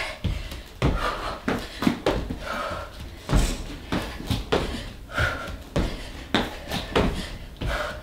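A run of irregular thuds as feet and hands land on an inflatable balance trainer dome and an exercise mat during burpees, with heavy panting breaths between them.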